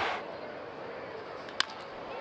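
Steady murmur of a ballpark crowd, then about a second and a half in, a single sharp crack of a baseball bat hitting a pitched ball for a base hit.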